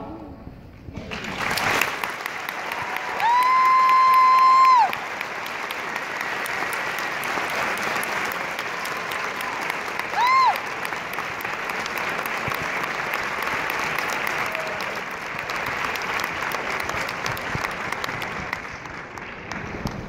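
Audience applause, starting about a second in as the choir's last chord dies away. A loud, held whistle rings out about three seconds in, and a short whistle comes around ten seconds in.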